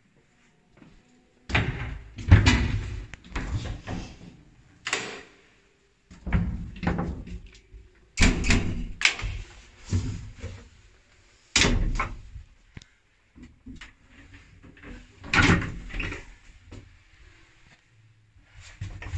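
Hinged landing door and doors of an original ZUD passenger lift being opened and shut by hand: a series of bangs, knocks and rattles, the loudest about two seconds in and again around eight, twelve and fifteen seconds.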